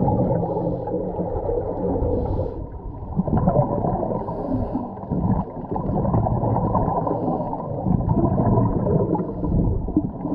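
Muffled underwater sound through a GoPro's waterproof housing: scuba divers' exhaled regulator bubbles gurgling and water rushing past, dull and uneven in level.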